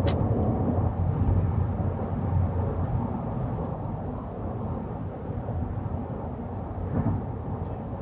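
Steady low rumble of a car driving on the highway, heard from inside the cabin.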